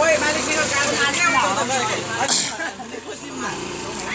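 Several people's voices talking on a street, with a steady low vehicle engine hum in the first half and a short hiss a little after two seconds in.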